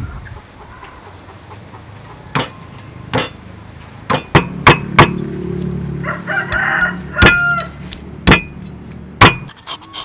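A cleaver strikes a wooden chopping board in a series of sharp, irregular knocks while fish is scaled and cut. A rooster crows briefly about six seconds in.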